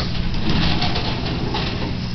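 Sliding glass door being opened, rumbling along its track, with a low thump at the start.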